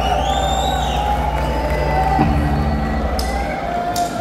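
Rock concert crowd cheering between songs over a sustained low note from the stage's amplifiers. The note cuts off about three and a half seconds in, and sharp high hits follow near the end as the band starts up.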